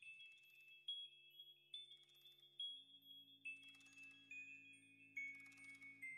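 Quiet background music: a slow melody of bell-like chime notes over a sustained low chord that shifts about two and a half seconds in.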